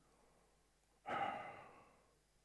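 A man's single audible breath, close to a headset microphone, starting about a second in and fading out over about a second.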